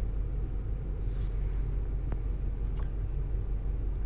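Steady low background rumble, with one faint click about two seconds in.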